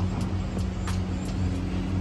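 Steady low hum and traffic rumble of a city street, with a single sharp click about a second in.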